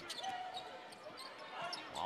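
Basketball being dribbled on a hardwood court over a low, steady murmur of an arena crowd.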